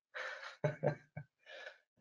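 A man's audible intake of breath, then a couple of brief voiced sounds and another short breath: a speaker drawing breath between sentences. The voice is heard over a webinar's call audio, which drops to silence in the gaps.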